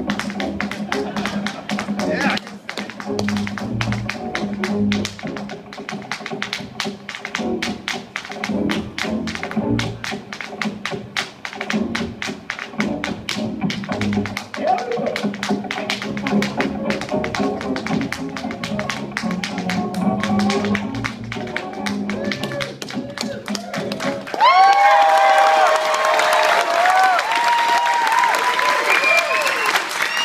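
Rapid tap-dance footwork, shoes striking a wooden dance board in quick runs over recorded Latin-flavoured music. About three-quarters of the way through, the music and taps stop and the audience breaks into louder cheering and whooping.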